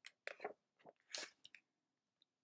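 Faint crinkly rustling of a picture book being handled and tilted, in a handful of short bursts, the loudest just past a second in.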